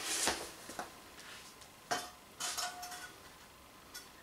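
A shot-up tin can, nearly cut in two, being picked up and handled: several light metallic clinks and clatters over the first three seconds, one with a brief ringing tone.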